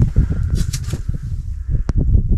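Rustling and irregular soft knocks of a small burbot being handled and unhooked, with one sharp click near the end.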